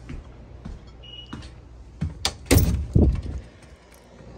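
An exterior door being handled: a few sharp latch clicks about two seconds in, then several loud thuds as the door swings open and bangs.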